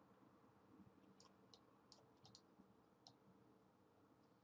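Faint computer mouse clicks, about six short clicks spread over a couple of seconds, against near silence.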